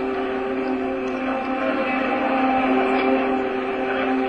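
A steady, held droning tone with a stack of even overtones; one of its upper tones drops out for a second or so in the middle and then returns.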